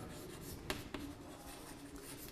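Chalk writing on a blackboard: faint scratching strokes, with two short sharp taps of the chalk around the middle.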